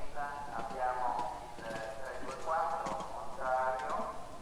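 A horse's hoofbeats on a sand arena as it lands over a jump and canters away, a few dull knocks, with a voice talking loudly over it.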